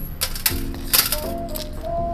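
Soft background music with a steady melody, over which a few sharp gritty clicks and crunches, the loudest about a second in, come from a plastic spoon working coarse potting mix in a plastic cup.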